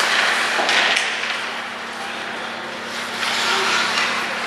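Ice hockey skate blades scraping and carving the ice in an arena, in several swells of hiss, over a steady low hum.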